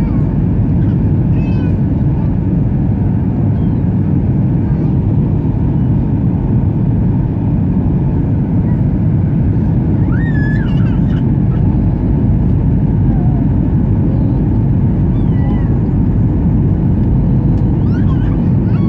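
Steady low rumble of a Boeing 737-900ER's cabin on approach: engine and airflow noise heard from a window seat over the wing. Faint, short high-pitched rising-and-falling cries come through a few times, clearest about ten seconds in.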